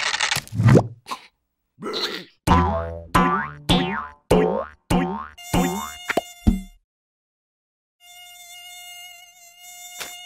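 Cartoon bouncing sound effects: about seven quick boings, each falling in pitch, about half a second apart, as the characters bounce on a rubber balloon. Near the end a mosquito's steady, wavering whine comes in.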